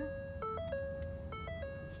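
Background music: a simple electronic melody of held notes, the same short figure repeating about once a second.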